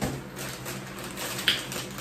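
Plastic packaging rustling and crinkling as a gold plastic mailer is handled and a plastic thank-you bag is pulled out of it, with one sharp crackle about one and a half seconds in.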